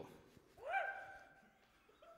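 A hushed room with one short vocal note about two-thirds of a second in. It rises and falls, then fades out over about half a second, leaving near quiet.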